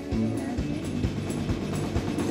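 Live pop-rock band playing an instrumental stretch of a song: a steady drum beat about two hits a second under bass and guitar.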